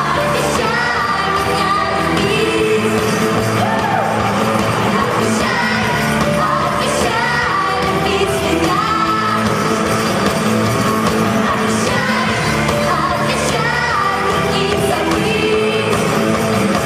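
Live amplified pop-rock band performance: female singing over electric guitars, bass, drums and keyboard, heard through the PA in a large concert hall.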